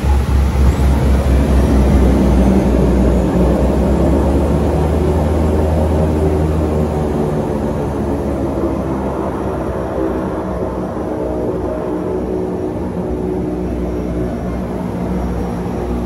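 Cabin noise of a small twin-engine propeller plane on the runway after landing. The engines and propellers run with a deep rumble and a set of steady droning tones. The rumble eases about halfway through and the overall sound slowly dies down as the engines are throttled back.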